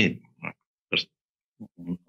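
A man's voice trails off at the end of a phrase, then pauses with a few short mouth and breath sounds. Near the end come brief low grunt-like hesitation sounds before he speaks again.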